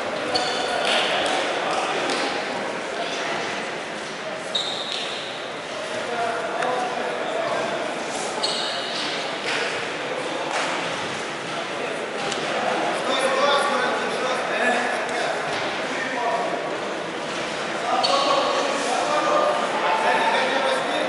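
Echoing sports-hall ambience: indistinct voices from around the hall with occasional dull thuds of bodies on the mats.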